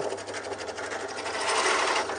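Pedestal drill press fitted with a Forstner bit, running just after being switched on: a steady motor hum under a fast, even mechanical rattle that grows louder toward the end.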